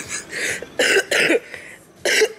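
A woman laughing: a few short, breathy bursts of laughter in the first second and a half, then quieter.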